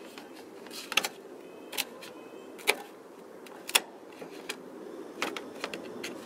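A Spyderco kitchen knife sawing through the crust of a baked frozen pizza on a metal pizza pan, its blade striking and scraping the pan in about six sharp, irregularly spaced clicks, a few with a short metallic ring.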